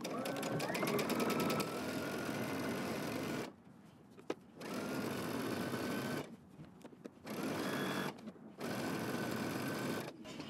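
Computerized home sewing machine stitching a seam in knit fabric. The motor speeds up with a rising whine at the start, then runs in four stretches broken by short pauses.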